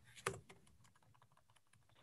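Faint computer-keyboard typing: a quick run of key clicks over the first second and a half, then it stops.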